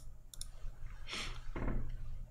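A quiet room with a steady low hum: a few quick light clicks about half a second in, then a breath out and a brief low murmur from a man.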